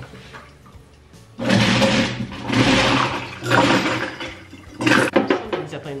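Kitchen sink garbage disposal run with water in three short bursts, each switched on and off abruptly, with a metal toothpick caught in the disposal.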